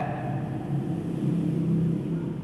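A steady low rumble with a faint hum, swelling slightly in the second half, with no speech over it.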